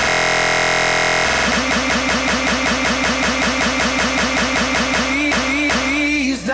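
A pop track stuck in a very short beat loop in a DJ app. First a 1/32-beat loop turns it into a steady, engine-like buzz for about a second; then the loop lengthens and a short fragment repeats about six times a second as a rapid stutter.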